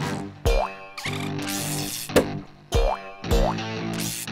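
Cartoon soundtrack: music overlaid with sound effects, about three quick rising pitch glides and a few sharp thumps.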